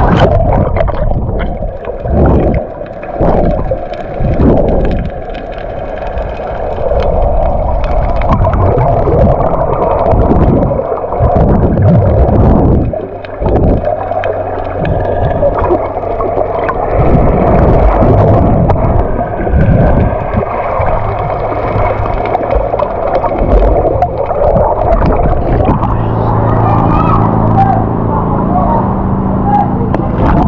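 Muffled underwater sound picked up by a camera submerged in the sea: water churning and bubbles gurgling, with irregular louder surges of rushing water. A steady low hum with several tones comes in near the end.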